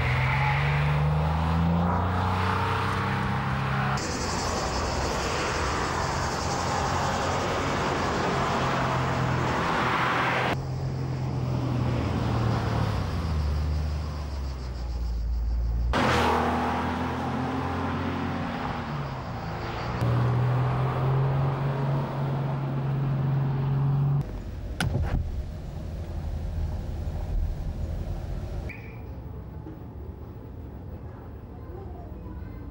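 Porsche 911 (993) Targa's air-cooled flat-six engine under way, its pitch climbing as it accelerates and dropping as it slows, in several shots joined by abrupt cuts. From about four to ten seconds a high steady hiss runs with it, and it is quieter near the end.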